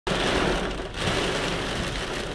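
Heavy rain falling on a car's windshield and roof, heard from inside the cabin as a steady hiss.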